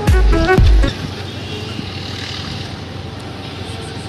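Background music with a heavy beat that stops about a second in, leaving steady street and traffic noise.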